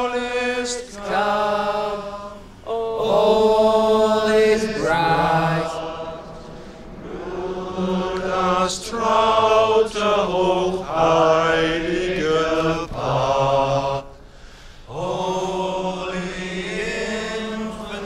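A group of men's voices singing a slow carol together in long, held notes, phrase by phrase, with a short break about two-thirds of the way through.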